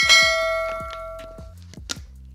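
A single bell-like ding sound effect that strikes once and rings out with several tones, fading over about a second and a half, with a short click near the end.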